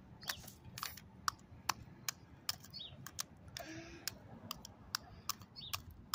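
Screwdriver tip jabbed repeatedly into a block of ice, giving sharp, irregular clicks about three times a second as it chips away at the ice.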